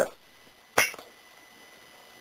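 Quiet room tone broken once, a little under a second in, by a single short hissy noise.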